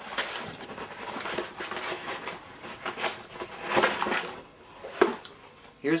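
A cardboard box being picked up and handled close by, with irregular rustling, knocks and light clatter, and a sharper knock about five seconds in.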